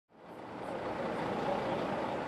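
Steady outdoor road-scene noise with a vehicle sound, fading in over the first second.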